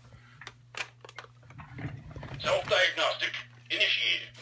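Robosapien V2 toy robot: a few sharp clicks in the first two seconds, then two short bursts of its electronic voice.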